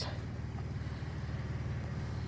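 A vehicle engine idling: a steady low rumble that holds the same pitch and level throughout.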